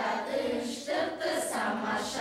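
A group of children and women singing a song together, unaccompanied.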